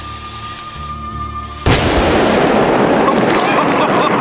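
An ear-shredding bang as a metal tin filled with acetylene gas and air explodes, about two-thirds of the way through, with a long noisy tail after it. Before it, tense background music holds a steady note.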